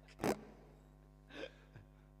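A short, sharp burst of laughing breath close to the microphone, then a softer breath about a second later, over a faint steady hum.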